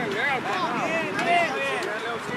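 Several voices shouting and calling out at once, overlapping, some of them high-pitched, from people on the sideline and field of a youth soccer match, loudest about a second and a half in.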